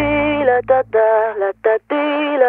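Dance-pop song's closing bars: a heavily processed vocal sings short, chopped phrases on flat, stepped notes. The bass drops out under it less than a second in.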